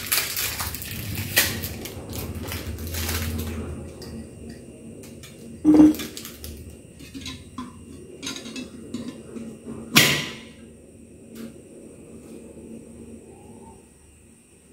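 Plastic wrapping crinkling as it is peeled off a new pitcher's lid, then the lid and the pitcher clinking together as the lid is fitted: two sharp knocks about six and ten seconds in, with lighter taps between.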